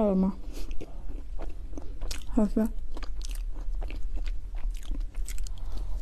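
Close-up mouth sounds of a person biting and chewing soft cake: scattered wet clicks and smacks, with a brief voiced sound about two and a half seconds in. A steady low hum runs underneath.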